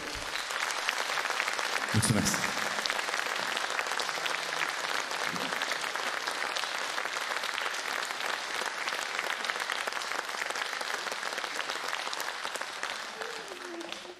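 Concert-hall audience applauding steadily, dying away near the end.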